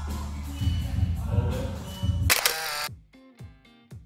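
Backing music with guitar, cut by a camera shutter click a little over two seconds in. The music then gives way to a quieter, sparse tune of plucked notes over a soft, regular beat.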